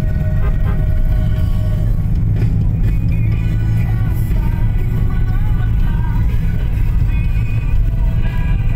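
Steady low rumble of a vehicle driving, heard from inside the cabin, with music playing over it.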